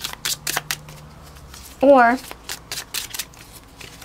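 A deck of oracle cards being shuffled by hand: a run of quick, papery clicks, densest at first and then thinning out.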